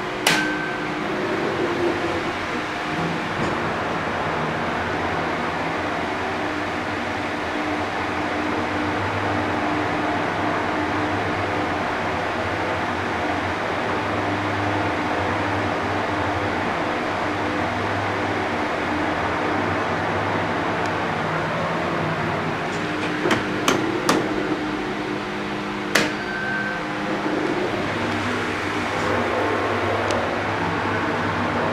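Mitsubishi GRANDEE rope-traction passenger elevator running: a steady mechanical hum with low steady tones as the car travels. A sharp click with a short beep comes near the start and again a few seconds before the end, with a cluster of clicks shortly before the second beep.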